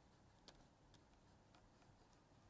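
Near silence: room tone with a few faint ticks of a stylus on a tablet screen as handwriting is written, the clearest about half a second in.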